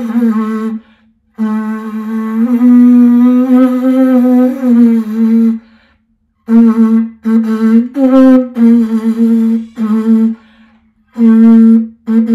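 Conch shell blown like a horn, playing a slow, haunting melody on a few notes around middle C, the lower notes made by pushing the hand into the shell's opening. A long held note comes first, then a string of short notes a step or so apart.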